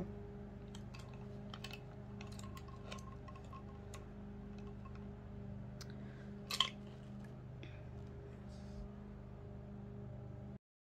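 Faint clicks and taps of a metal tufting gun being handled and turned over, with one louder click about two-thirds of the way through, over a steady low hum. The gun's motor is not running.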